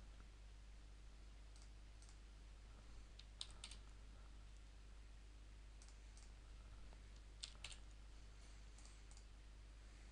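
Faint computer keystrokes and mouse clicks, a few at a time in small groups spread a second or two apart, over a low steady hum.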